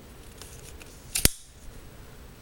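BlackHawk CQD Mark II Type E folding knife opened with a thumb stud, the blade snapping into its button lock with one sharp click a little over a second in.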